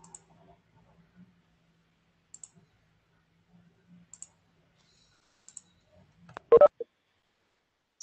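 A few faint, sharp clicks spaced a second or two apart, typical of computer mouse clicks, over a faint steady hum; about six and a half seconds in comes one loud, short knock.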